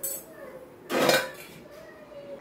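Metal pots and kitchen utensils clinking and clattering on a gas stove: a short clink at the start and a louder clatter about a second in.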